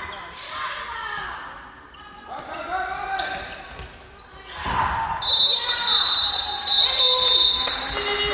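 A handball bouncing on a sports-hall floor, with players' shouts echoing in the hall. From about five seconds in, a louder run of high, shrill tones with short gaps between them takes over.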